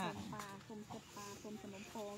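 Chickens clucking in a run of short, repeated calls, with faint voices in the background.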